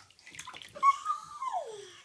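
Infant's short, high vocal squeal, about a second long, that falls steadily in pitch near the end. A few small splashes of bath water come just before it.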